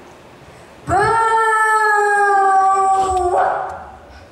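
A performer's voice holding one long, loud note, swooping up into it about a second in and holding it for over two seconds, then breaking off into a short breathy rush.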